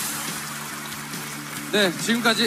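A large audience applauding, a steady patter of many hands clapping. A man's voice starts speaking near the end.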